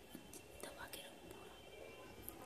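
Near silence: faint room tone with a few soft rustles.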